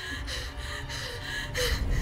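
A young woman gasping and panting hard, several quick breaths in a row, as she runs, with a low rumble growing underneath near the end.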